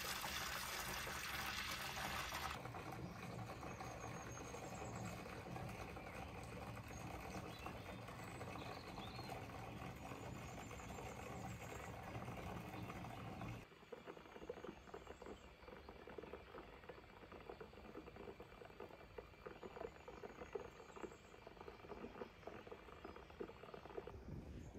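Water pouring from a tap into a bathtub as it fills, a steady splashing stream. It gets quieter about two and a half seconds in and again about halfway through.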